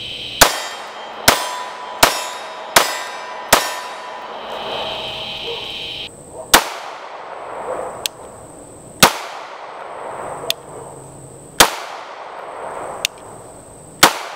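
Honor Defense Honor Guard 9mm compact pistol firing: five shots in quick succession, a little under a second apart, then single shots spaced about two and a half seconds apart.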